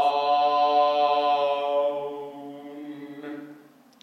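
A man's voice singing one long held note, steady in pitch, loud at first and fading away over its last second or two. It is a sung imitation of the final word "down" as the student sang it.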